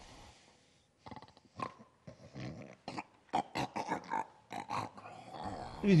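A man in heavy drunken sleep making a quick, irregular series of short snores and grunts.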